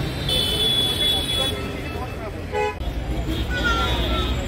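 Busy city road traffic, with engines rumbling low throughout. A short vehicle horn toot comes about two and a half seconds in. A high-pitched steady tone lasts about a second near the start.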